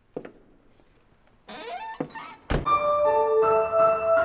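A car door shutting with a heavy thump about two and a half seconds in, after a light click and some rustling as someone settles into the seat. Piano music starts right after the thump.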